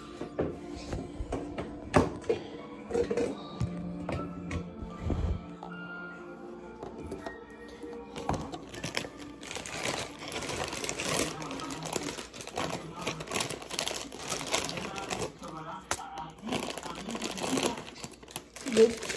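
Background music, then from about eight seconds in the crinkling of a plastic Shin Ramyun instant-noodle packet being handled.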